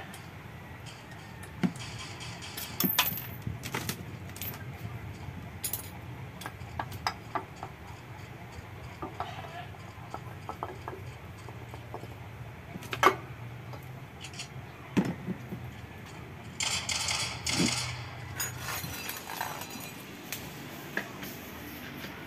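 Scattered metallic clicks, knocks and scrapes as the aluminium cylinder head cover of a push-rod motorcycle engine is worked loose and lifted off by hand, exposing the rocker arms. One sharp knock about 13 s in is the loudest, and there is a short stretch of scraping around 17 s.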